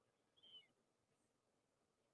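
Near silence, with one faint, short high chirp about half a second in.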